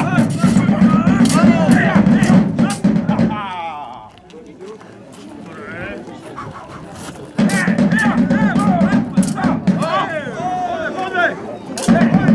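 Rapier blades clashing in a staged sword fight, with sharp metallic clanks scattered throughout, against loud music and voices. The music and voices drop away about three and a half seconds in and return about seven seconds in.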